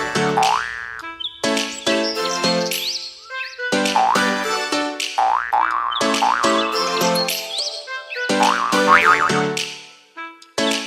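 Upbeat instrumental background music: short bright pitched notes with repeated rising sliding tones, fading out near the end.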